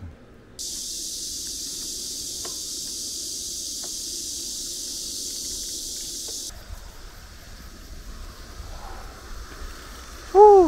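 Steady high-pitched buzzing of a cicada chorus from summer trees, starting a moment in and cutting off abruptly about six seconds in. After that, low wind rumble on the microphone of a moving bicycle.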